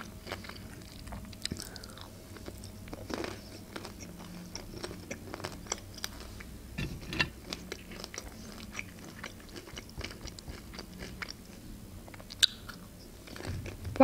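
Close-miked chewing and biting of fried pelmeni (pan-fried dumplings), a steady run of small wet mouth clicks with a few sharper bites.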